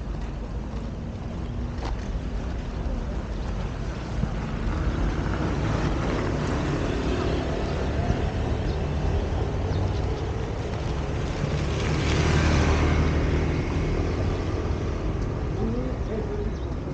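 Steady low rumble of city traffic, with engine hum, swelling to its loudest about twelve seconds in before easing off.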